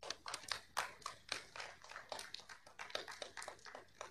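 Scattered clapping from a few people in a meeting room, a quick irregular patter of sharp claps, about five or six a second.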